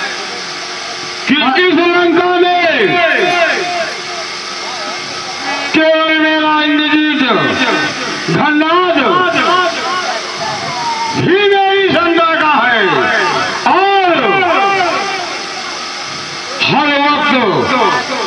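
A loud voice through a distorted public-address system, delivering long drawn-out phrases with short pauses between them, over a steady loudspeaker hiss.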